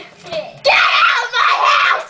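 A girl's loud shriek that starts just over half a second in and lasts a little over a second.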